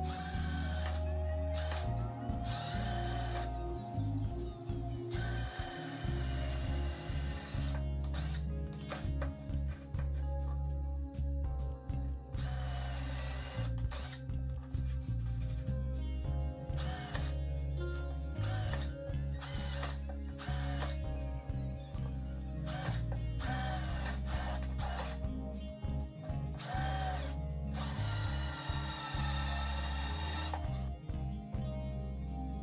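Cordless drill run in repeated bursts of a few seconds, boring into a wooden cabinet top with a hole saw and a small bit. It cuts slowly because its battery pack had not been charged. Background music plays underneath.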